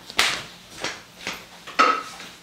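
Hand spray bottle squirted four times in quick succession, each squirt a short hiss about half a second apart; the last is the loudest, with a brief tone in it.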